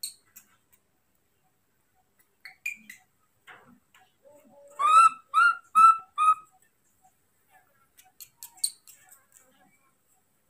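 Baby macaque calling for its keeper to bring food, in a loud voice: a few faint squeaks, then four short, high-pitched calls in quick succession about five seconds in. Faint clicks follow near the end.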